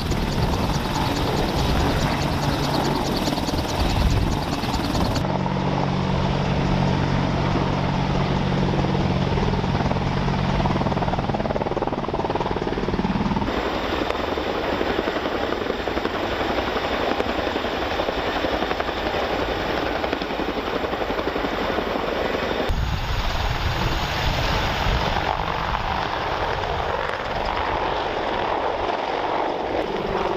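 AH-64 Apache helicopters running on the airfield, their two turboshaft engines and rotors loud and steady; the sound changes abruptly three times as the shot changes, with a steady low hum in one stretch.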